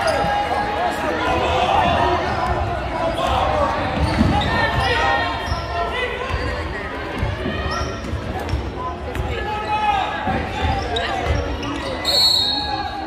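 A basketball being dribbled on a hardwood gym floor, with repeated bounces under continuous crowd chatter.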